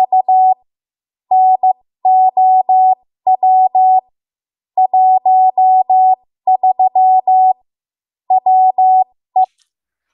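Morse code broadcast by W1AW, the American Radio Relay League's station: a single steady tone keyed on and off in short dots and longer dashes, sent in groups of characters with short gaps between them.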